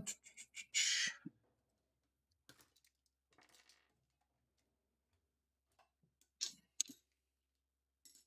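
Small hand tools and parts being handled and set down on a workbench: a short hissing rustle about a second in, faint ticks, then two sharp clicks about six and a half seconds in.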